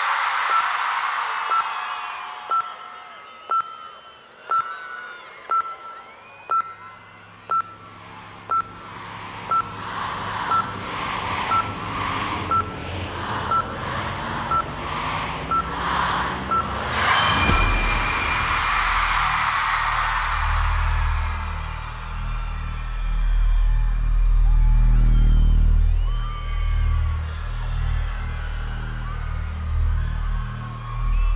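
Concert countdown: a short electronic beep once a second over a cheering crowd, with a building swell between the beeps. About halfway through, the countdown ends in a loud hit and bass-heavy electronic show-opening music starts.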